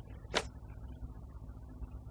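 Quiet room tone in a narration pause: a steady low hum, with one brief soft noise about a third of a second in.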